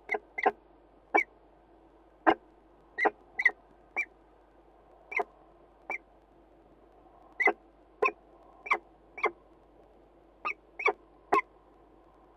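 A bird giving short, sharp calls, about sixteen in irregular succession, some in quick pairs, over a faint steady hiss.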